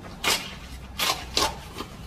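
A paper envelope being torn open by hand: several short ripping noises.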